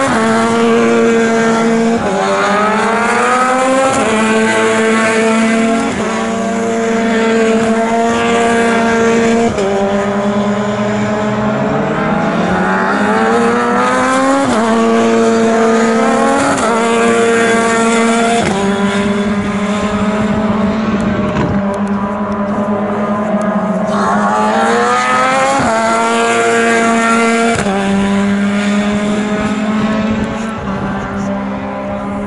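Formula 3 single-seater race cars driving past at speed, their engines revving hard. The engine note repeatedly climbs and then drops in a step at each gear change.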